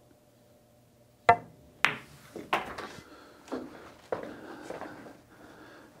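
A pool cue strikes the cue ball with one sharp click about a second in. Several softer clacks and knocks follow as balls collide, roll on the cloth and the object ball is pocketed.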